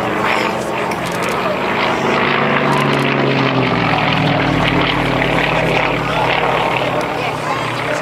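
Aerobatic propeller plane's engine droning overhead, its pitch sliding down between about two and five seconds in.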